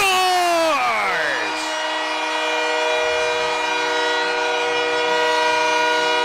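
Arena goal horn sounding one long, steady multi-tone blast right after a hockey goal, over a cheering crowd. It sets in about a second and a half in, after a drawn-out shout that falls in pitch.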